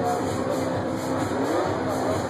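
Loud dance music from a club sound system, heard through a phone's microphone, with a tone that glides upward past the middle.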